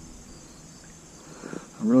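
Quiet outdoor ambience with a faint, steady, high-pitched insect drone; a man's voice begins near the end.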